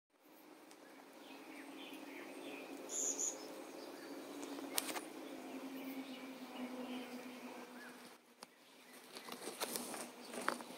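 Outdoor ambience with a steady low hum, a few small bird chirps and one short high chirp about three seconds in, and a few sharp clicks of the phone being handled.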